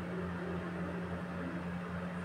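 Steady low hum of a running appliance or fan in the room, with a faint regular pulsing underneath; nothing else sounds.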